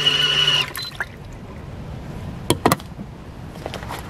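PetMoll rechargeable compact washing machine's motor running with a steady whine and hum, then cutting off under a second in as its wash timer runs out, followed by a short beep. Two sharp clicks come about two and a half seconds in.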